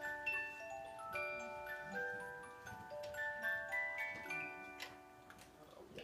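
Music box playing a melody of plucked metal notes that ring on and overlap, slowing and dying away about five seconds in.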